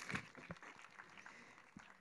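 Faint audience applause fading away, leaving near silence with a few soft clicks.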